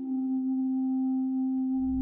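Background music: a single sustained, pure-sounding electronic drone note held steady, with a low bass rumble coming in near the end.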